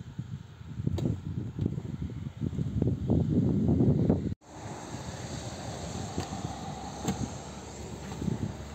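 Wind buffeting the microphone in irregular low gusts, strongest just before a sudden cut about halfway through, then a steadier, quieter rush of wind noise with a few faint clicks.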